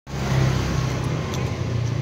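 Motor scooter engine idling with a steady low hum.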